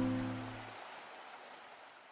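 A final strummed ukulele chord ringing out and fading away; its low notes stop under a second in, leaving a soft hiss that dies away.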